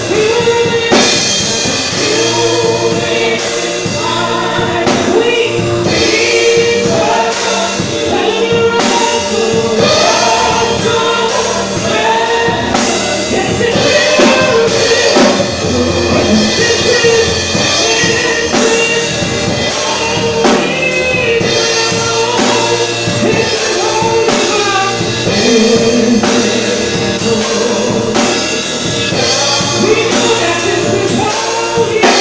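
Live gospel worship song: a man and two women singing into microphones, backed by a drum kit and an electronic keyboard, continuing steadily.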